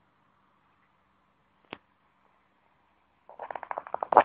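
Near silence, broken by a single short click a little under two seconds in.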